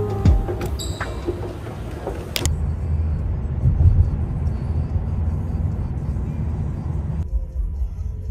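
Background music, then, after a sudden cut about two and a half seconds in, the low rumble of a car riding on the road, heard from inside the cabin.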